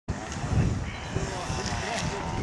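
Faint distant voices over a steady low rumble of outdoor background noise.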